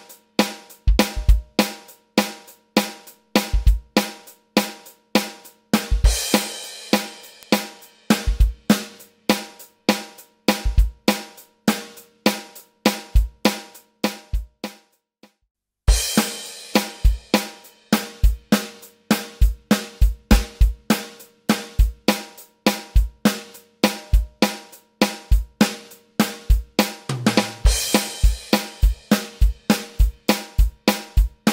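Electronic drum kit playing a steady pop beat on kick, snare and hi-hat, with crash cymbal hits about six seconds in and again a few seconds before the end. The playing stops briefly about halfway through, then starts again.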